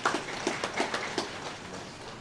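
Light, scattered applause from a few people, irregular claps that thin out about a second and a half in.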